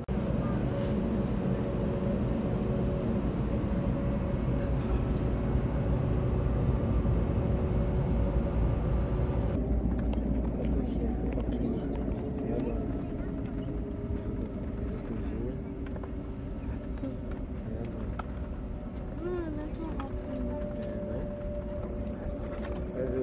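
Airliner cabin noise: the engines and cabin air running as a steady rumble with two steady tones while the plane taxis. About ten seconds in, the hiss drops away and the sound becomes slightly quieter and duller.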